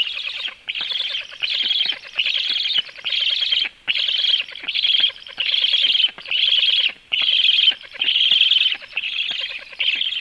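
Black stork nestlings giving a steady run of high begging calls, about thirteen in a row, each about half a second long with short breaks between.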